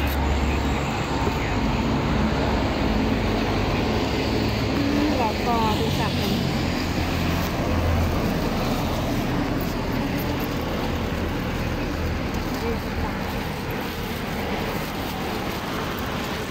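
Street traffic noise with people talking in the background.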